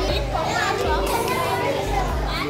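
Children's voices and chatter, several at once, filling a busy hall.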